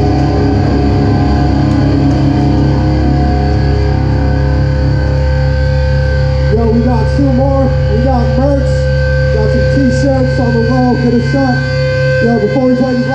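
Amplified electric guitars left ringing between songs: steady amplifier hum and held, feedback-like tones. About halfway through, people's voices join in.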